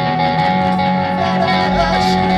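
A live rock band playing amplified electric guitars over drums. The deep bass drops away for most of the moment and comes back in near the end.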